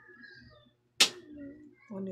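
A single sharp click or smack about a second in, followed by a brief low hum of a man's voice.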